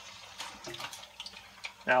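Chicken drumsticks frying in hot lard: a steady sizzle with scattered crackles and pops as the pieces go in.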